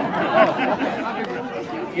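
Chatter of several people talking at once, with no single clear voice.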